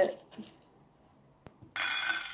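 A faint click, then near the end a brief rattle of dry beans in a plastic tub as a handful is taken out.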